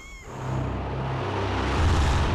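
Soundtrack transition: a rising whoosh with a low, pulsing rumble swells in about a quarter second in and builds into ominous documentary music.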